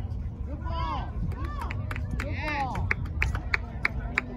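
People shouting across an outdoor soccer field, with wind rumbling on the microphone. A run of quick sharp clicks, about four a second, comes in the second half.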